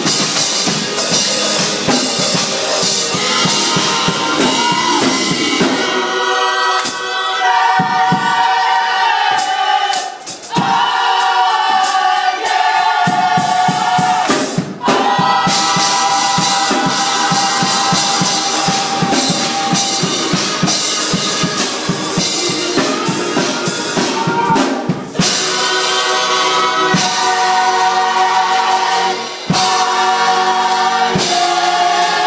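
Gospel choir singing with a drum kit, holding long notes, with a few short breaks in the sound.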